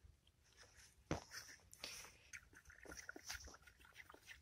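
Faint clicks and knocks of a thin wooden stick stirring dark liquid in a plastic bucket, the loudest tap about a second in.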